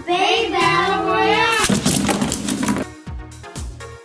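A child's voice shouting, drawn out for over a second, then about a second of a noisy crashing sound effect. Electronic music with a steady thumping beat comes in near the end.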